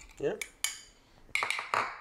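Metal spoon stirring a thin sauce in a ceramic bowl, with a few sharp clinks as it strikes the bowl's side: one about half a second in, and a cluster around a second and a half in.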